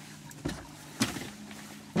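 Knocks and thumps of a person moving about in a fishing boat, three sharp ones about half a second, one second and two seconds in, the last two the loudest, over a steady low hum.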